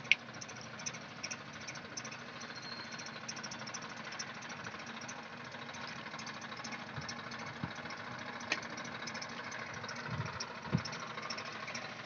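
A farm tractor's diesel engine running steadily as it works a flooded paddy field. There is a sharp click at the start and a couple of dull thumps near the end.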